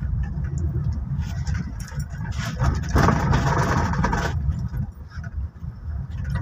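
Engine and road noise inside a moving SUV's cabin: a steady low rumble, with a louder rush of noise for about two seconds in the middle.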